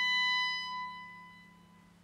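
A high clarinet note held steadily, then fading away over about a second. It leaves a faint, steady low hum underneath.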